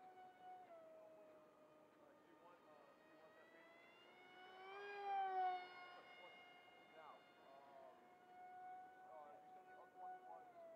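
Electric RC plane in flight: a 2400kv brushless outrunner motor spinning a 6x4 pusher propeller, heard as a steady, faint high-pitched whine. About five seconds in the whine rises in pitch and gets louder as the plane passes close, then drops back to its steady note.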